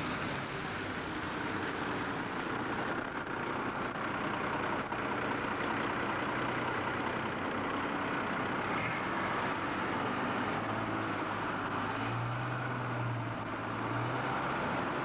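Single-deck bus driving past close by and pulling away, its diesel engine drone running under steady road and traffic noise. A few faint high squeals come in the first three seconds, and the engine drone gets louder near the end.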